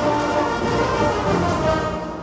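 Oaxacan wind band (banda de música de viento) playing a full, loud passage, with sousaphones, euphoniums and other brass over bass drum. The sound drops off near the end as the phrase closes.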